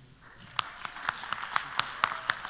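Scattered handclaps from a small group of people, starting about a third of a second in and building into light applause.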